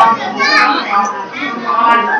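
Several people talking at once, children's voices among them.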